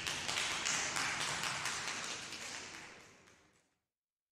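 Congregation applauding in a church, many overlapping claps with reverberation, the sound fading away to nothing about three and a half seconds in.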